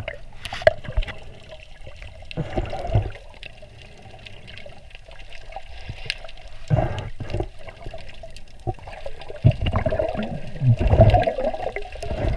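Water sloshing and gurgling around an underwater camera, muffled, swelling in surges every few seconds.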